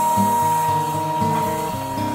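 Cylinder vacuum cleaner running over carpet, a steady motor whine with a hiss of suction, under acoustic guitar music.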